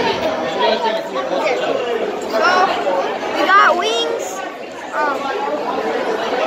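Restaurant dining-room chatter: many diners talking at once in a steady babble, with a few nearer voices standing out around the middle.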